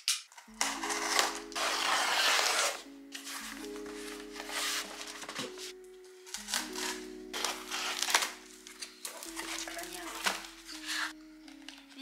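Background music with sustained chords and a low bass note. Over it, cardboard scrapes and crinkles as a box's tape is slit with a small box cutter and its flaps are pulled open, loudest early on and then in shorter bursts.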